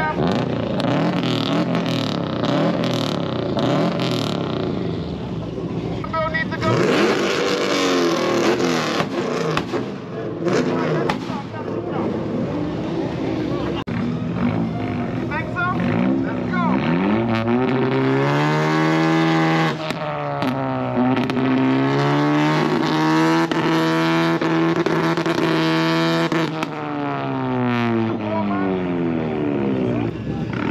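Car engines revved hard while parked. The first half is rough and crackly; in the second half an engine note rises and is held high for several seconds before dropping off near the end.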